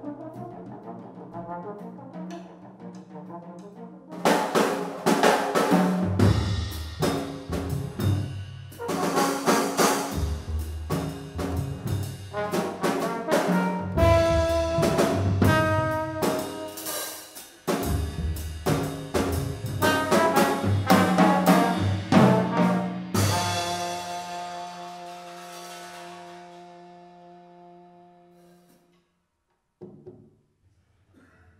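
Live jazz trio of trombone, double bass and drum kit: a quiet start, then loud playing with busy drums, ending on a long held trombone note over ringing cymbals that fades out near the end.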